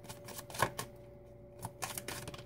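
A tarot deck being shuffled by hand: a scattering of quick, soft card clicks and flicks, pausing briefly just past the middle before a few more.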